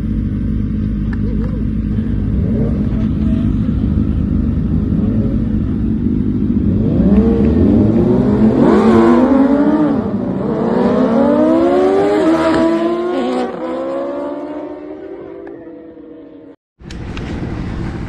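Racing sport motorcycles on a start line. Their engines run steadily at first, then rev hard and accelerate away about seven seconds in, the pitch climbing, dropping and climbing again, before fading as the bikes leave.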